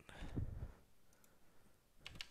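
Faint, scattered clicks of computer-keyboard keys, with a short, faint low sound in the first half second and near silence in between.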